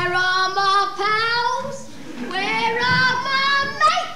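A child's voice singing two long held phrases with vibrato, separated by a short breath.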